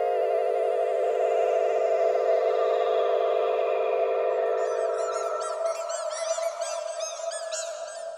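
A held, shimmering synthesized tone that wavers and fades away about three-quarters of the way through. From about halfway, a flurry of quick rising-and-falling twinkly chirps comes in as a magical sparkle effect.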